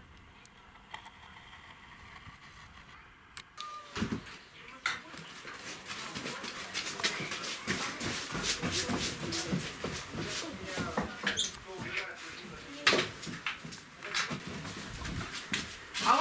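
Faint outdoor background for about three and a half seconds, then indistinct voices with scattered knocks and clatter.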